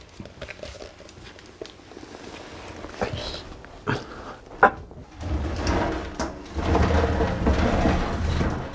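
A few sharp knocks and clicks, then several seconds of dense rubbing and scraping noise that starts about five seconds in.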